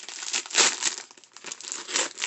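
White paper gift wrapping torn and crumpled by hand, with the plastic sleeve of a brush pack crinkling as it is pulled free; the loudest rip comes about half a second in.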